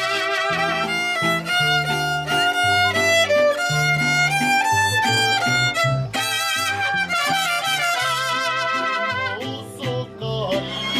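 Mariachi violin playing a melody with a wavering vibrato, over a low bass line. The music dips briefly in loudness near the end.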